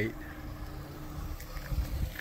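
Outdoor parking-lot ambience: a low, uneven rumble with a faint steady hum, and a few soft low thumps near the end.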